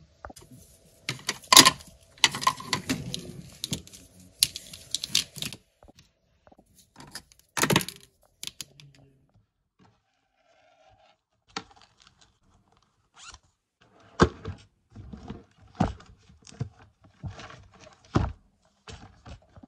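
Stationery being handled and packed on a desk: pens and markers clicking and scraping as they go into a fabric pencil case, with short irregular knocks of items set down, the loudest near the end as books are handled.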